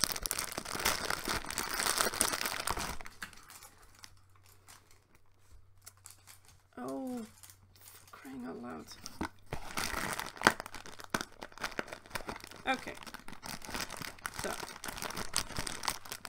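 Plastic muesli bag crinkling as it is pulled open and handled, loudest in the first few seconds and again through the second half with a few sharp crackles. A short hummed voice sound comes twice around the middle.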